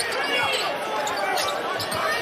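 Basketball game sound: a ball dribbled on a hardwood court, with short high sneaker squeaks, over steady arena crowd noise.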